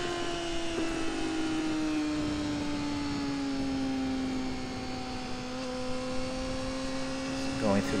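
Honda CBR600F4i sportbike's inline-four engine running at speed on board, with a steady rush of wind noise under it. The engine note sinks slowly through the first few seconds as the bike leans into a long corner, then climbs a little again near the end.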